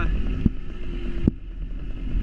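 Small motorcycle engine running as the bike rolls along, with wind rumbling on the microphone and a couple of light knocks; the engine note drops and goes quieter about two-thirds of the way through.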